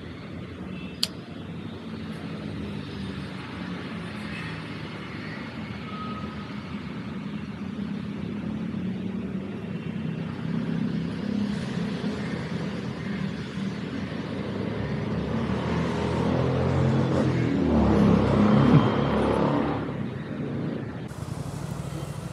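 Road traffic going by as a steady low rumble. It swells as a vehicle passes close about eighteen seconds in, then eases off. There is a single sharp click about a second in.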